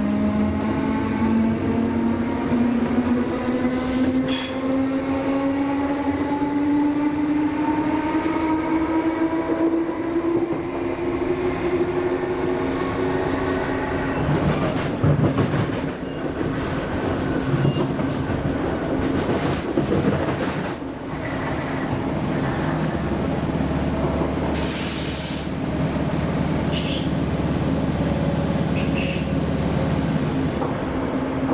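Class 317 electric multiple unit heard from inside the carriage while running: a motor whine rises slowly in pitch for the first half as the train gathers speed, then holds steady over wheel and track rumble. Scattered knocks from the rails come in the middle, and a short hiss about 25 seconds in.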